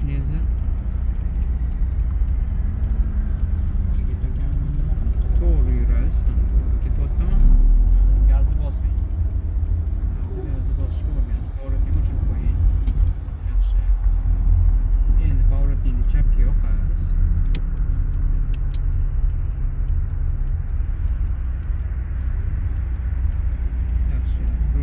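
Steady low rumble of a car's engine and road noise heard inside the cabin while driving, with voices talking now and then. The rumble swells for a second or so near the 8-second mark and again for several seconds in the middle.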